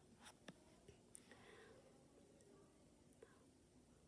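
Near silence: room tone with a few faint, brief clicks in the first second or so.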